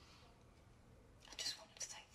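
A woman whispering or speaking on the breath: a few short, hushed bursts starting just over a second in, after a quiet pause.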